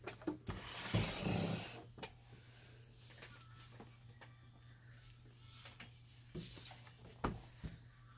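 A sewing machine slid across a wooden tabletop, giving a scraping rub about a second in, with a few light knocks. Near the end a shorter scrape and a knock as a ring-binder journal is dragged into place.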